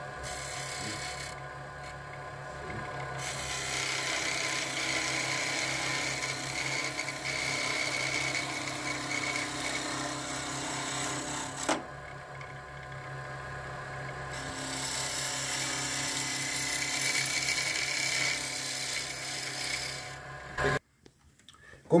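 Small wood lathe running with a steady motor hum while a hand turning tool cuts a spinning wooden pen blank, making a hissing scrape. The scraping pauses briefly about halfway, and the hum cuts off suddenly near the end.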